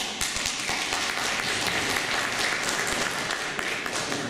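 An audience applauding: many hands clapping densely and steadily.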